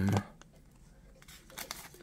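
1984 Fleer football cards and their wax-pack wrapper handled by hand: a few faint clicks and light rustles.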